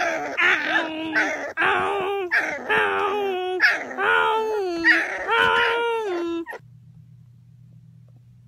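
A run of about half a dozen drawn-out, dog-like 'awoo' howls, each gliding down in pitch at its end, a human and a puppy howling together. They stop abruptly about six and a half seconds in.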